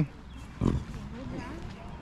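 Faint, distant voices of people, with one short low bump about two-thirds of a second in.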